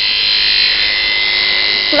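Moser electric dog clipper running steadily, a constant high hum with no cutting strokes.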